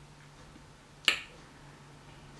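A single sharp click about a second in, with a faint steady low hum underneath.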